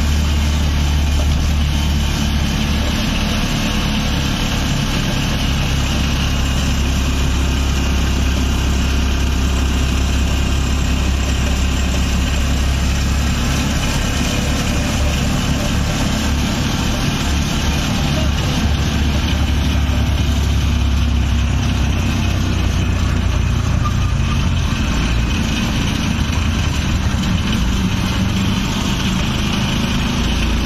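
Motorcycle tricycle's small engine running steadily under way, heard from inside the sidecar, with a continuous low hum mixed with road and wind noise.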